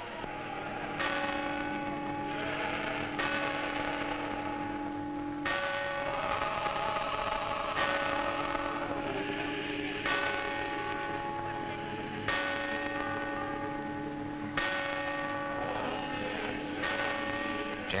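Church bells ringing, a new stroke about every two seconds, each one ringing on and overlapping the next.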